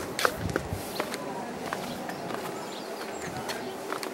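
Outdoor ambience: a faint steady hiss with scattered light clicks about every half second and a few brief high chirps.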